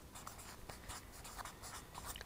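Faint scratching of a felt-tip marker on flip-chart paper as a word is written out in short strokes.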